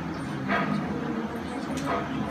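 Soft, indistinct speech: a quiet spoken answer with low murmuring voices around it.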